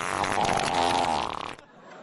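A long, rippling fart that cuts off abruptly about a second and a half in.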